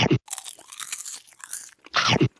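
Close-up crunching, like something crisp being bitten and chewed, lasting about a second and a half. It is framed by a short, loud, downward-sweeping sound right at the start and another near the end.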